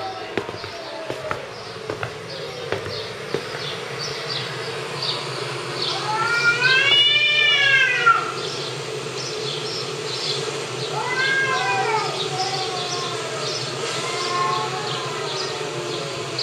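Two cats yowling at each other in a standoff, played back from a video on a screen. The long yowls rise and fall; the loudest comes about six to eight seconds in, with shorter ones later. A steady high chirping runs behind them, and there are a few clicks in the first seconds.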